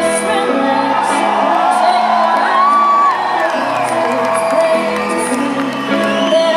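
Live band music: guitar with singing, and the audience whooping and cheering over it.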